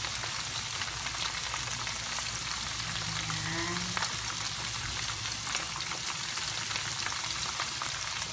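Kunafa-wrapped shrimps shallow-frying in oil in a pan over low heat: a steady sizzle with fine crackling.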